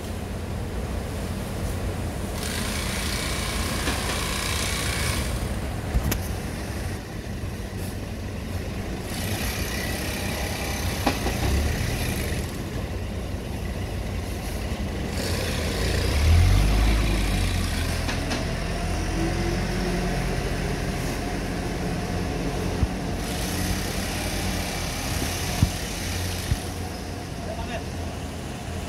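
Granular potash fertilizer pouring from a hopper chute into sacks, a hissing rush of a few seconds that repeats roughly every six seconds, over a steady low machine hum. A deeper rumble swells briefly about halfway through, and there are a few sharp knocks.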